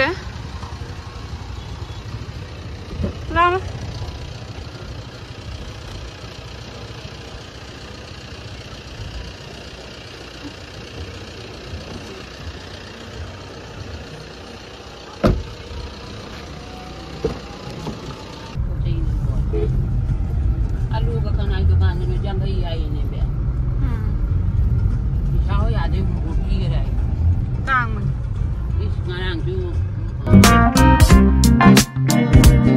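Street ambience with traffic and faint voices, a sharp knock about 15 s in, then a sudden change to a steady low rumble of engine and road noise heard inside a car's cabin, with faint voices over it.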